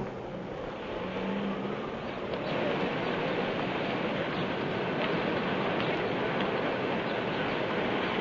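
Steady wash of city street traffic noise from a jam of cars, with no distinct single event standing out.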